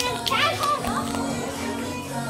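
A child's high voice calling out over steady background music.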